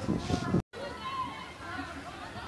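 Distant voices of players and onlookers calling out across an outdoor football pitch, with a brief complete dropout just over half a second in where the recording is cut.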